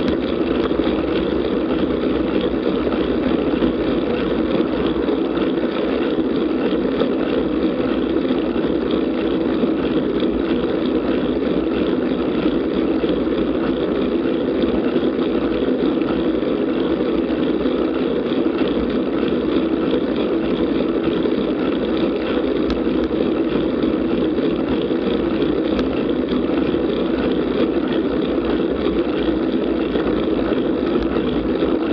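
Steady rush of wind over a camera mounted on a moving road bicycle, mixed with tyre noise on a wet road surface; an even, unbroken noise without pauses.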